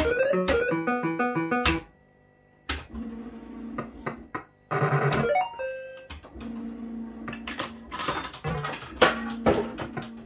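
JPM Hot Pot Deluxe fruit machine (MPS2): a quick stepping electronic jingle for the first two seconds, then, after a short pause, the clack and whirr of the reels spinning, electronic beeps and buzzing tones, and a run of sharp clicks near the end as reels stop and buttons are pressed.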